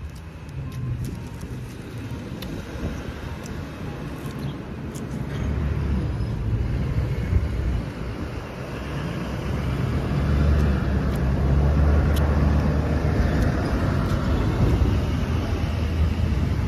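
A motor vehicle running close by, its low engine sound growing louder about five seconds in and strongest in the second half, with scattered faint clicks of eating.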